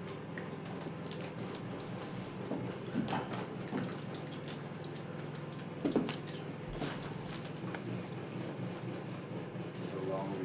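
Fake blood flicked from a plastic squeeze bottle onto a T-shirt: a few soft, short splats and squirts, the clearest about three and six seconds in, over a steady low hum of room noise.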